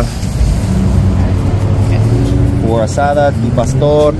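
Street traffic: a steady low engine rumble from cars on the road, with voices talking near the end.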